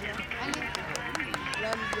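Spectators' voices chattering, several overlapping at once, with a few sharp clicks scattered through.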